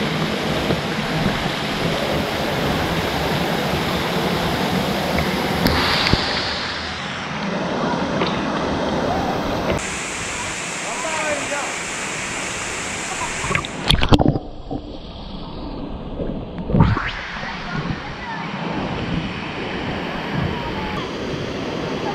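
A small waterfall pouring into a plunge pool, a steady rushing of falling water with splashing close by. Two sudden loud hits stand out a little past halfway.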